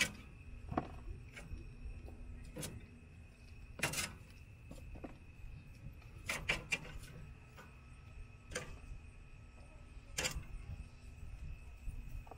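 Metal kitchen tongs clicking against a grill grate and a plastic tub as chicken wings are picked up and dropped in: sharp separate clicks and taps at irregular intervals, about one every second or two.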